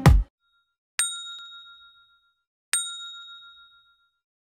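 Notification-bell sound effect: a bright bell ding struck twice, under two seconds apart, each ringing out for about a second. The intro's dance music stops just after the start.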